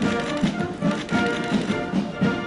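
Brass band music playing with a steady beat, typical of a military band at a guard of honour inspection.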